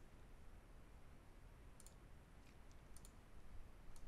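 Near silence, broken by a few faint computer mouse clicks in the second half, two of them quick double clicks.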